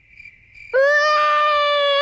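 Faint cricket chirping, then about two-thirds of a second in, a cartoon baby starts crying: one long, loud wail held at a steady pitch.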